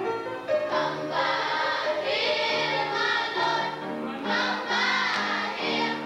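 Children's glee club singing a gospel song together, holding notes in several voices across short phrases.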